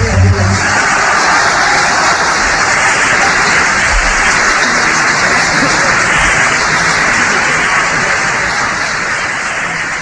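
Concert audience applauding and cheering just after the singer's final note, a dense steady clapping that begins to fade near the end.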